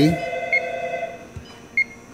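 Two short high beeps from the touchscreen of an APLIC 5000 press brake controller as keys are pressed during number entry, about a second apart, the second one louder.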